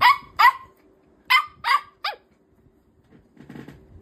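Small puppy barking: five short, high barks, two at once, two more about a second later, then a shorter fifth. A faint rustle follows near the end.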